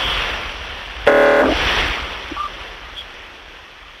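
Outdoor ambient noise: a steady rushing sound like wind on the microphone that slowly fades, with one short horn-like honk about a second in.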